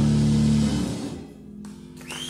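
Live rock band's closing chord on bass and electric guitars, held steady and then stopping about three quarters of a second in, leaving a faint fading ring.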